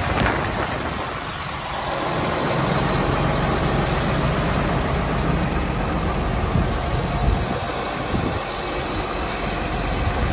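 John Deere 8330 tractor's six-cylinder diesel engine idling steadily. Wind buffets the microphone briefly near the start.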